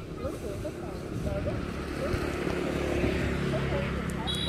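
A motorbike engine running on the road, growing gradually louder as it approaches, with distant voices.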